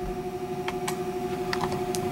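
A steady electrical or machine hum of two even tones, with a few faint, short clicks scattered through it.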